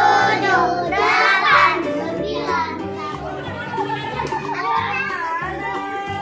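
Children's song with a steady bass beat, with children's voices singing loudly in the first two seconds, then softer voices over the music.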